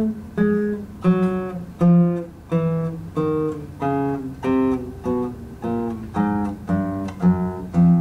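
Nylon-string classical guitar played as a slow left-hand finger-dexterity exercise: single notes plucked one after another, each ringing briefly, the notes coming closer together about halfway through.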